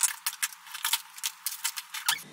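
Small plastic toiletry and makeup items clattering against each other as they are handled and dropped into a basket: a quick, irregular run of clicks and rattles.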